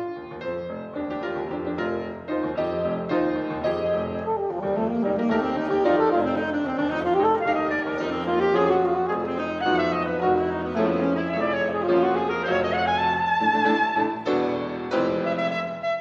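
Alto saxophone and piano playing a duet: piano chords with quick winding saxophone runs through the middle, the saxophone climbing to a held higher note about thirteen seconds in before the piano chords come back to the fore.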